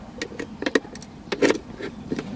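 A few short plastic clicks and knocks from hands working at a car's center console armrest while a small device is plugged into its power outlet. The loudest pair comes about one and a half seconds in.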